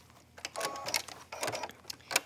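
Presser foot being changed on a computerized sewing machine: a series of small sharp metal and plastic clicks as the zipper foot is unsnapped, with a brief steady tone about half a second in.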